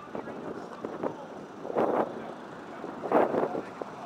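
City street ambience: traffic passing and wind on the microphone, with two short bursts of voices about two and three seconds in.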